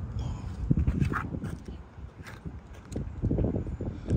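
Irregular low thumps and knocks of footsteps on asphalt and a handheld phone camera being moved, with low wind rumble on the microphone.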